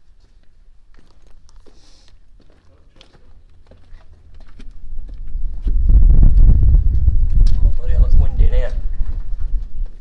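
Footsteps crunching on the gravel floor of a brick tunnel, then from about four and a half seconds in a loud, low rumble that swells quickly, holds, and drops away near the end.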